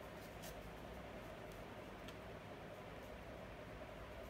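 Quiet room hum with a few faint clicks of a tarot card being drawn from the deck and handled.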